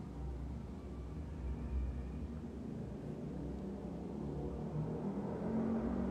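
A steady low rumble, with faint background music coming up and growing louder over the last couple of seconds.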